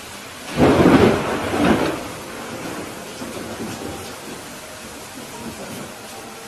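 A thunderclap over steady rain: a sudden loud rumbling crash about half a second in, dying away over a second or so into a low roll and the hiss of the rain.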